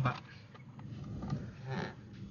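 Faint handling sounds from fingers pressing and working at the plastic instrument-cluster bezel at its lower clip, with a few light clicks.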